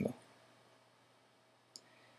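A single short mouse-button click near the end, as the Oscuros slider in Camera Raw's tone curve is grabbed, after the tail end of a spoken word; otherwise near-silent room tone.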